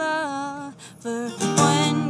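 A female singer accompanying herself on acoustic guitar: a sung phrase trails off, there is a brief lull about a second in, then strummed guitar and singing come back in louder.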